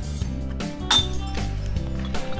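A clear glass bottle dropped through the brush-lined slot of a glass recycling container lands inside with one sharp glassy clink about a second in. Background music plays throughout.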